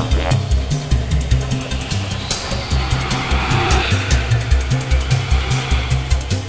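Electronic synthesizer music: a pulsing low bass sequence under fast ticking percussion, with a hissing synth sweep swelling up about two seconds in.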